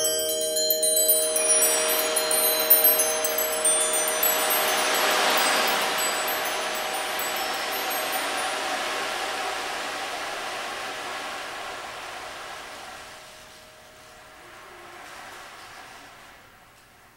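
Closing sound of a percussion ensemble: a glittering shimmer of high chimes over a few ringing mallet-instrument tones, swelling slightly about five seconds in, then slowly dying away to near quiet by the end.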